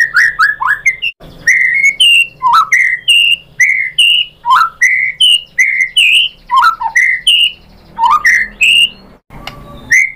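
White-rumped shama singing a fast run of loud whistled notes, many of them slurring downward, with a short pause near the end.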